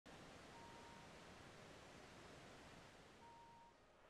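Near silence: a faint steady hiss, with two short, faint steady tones, one about half a second in and one near the end.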